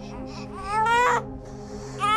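Newborn baby crying: one rising wail about half a second in, lasting under a second, over soft background music.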